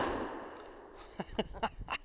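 The echo of two near-simultaneous 12-gauge shotgun blasts rolling off the range and fading out over about the first second.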